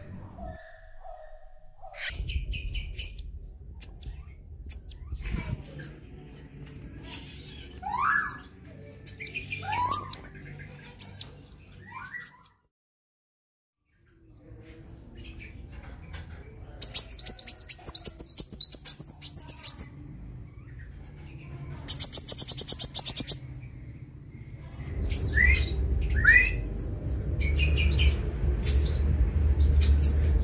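Sunbirds chirping: runs of short, very high, sharp chirps with a few rising whistled notes among them. There is a brief silent gap midway, after which the chirps come as rapid trills in several bursts.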